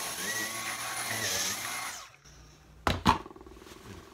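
Dyson V10 cordless vacuum with its bedding head running against a fabric cushion, a steady high whine with a hiss of suction, lifting dog hair out of the cloth. It cuts off about halfway through. Two sharp knocks follow close together about a second later.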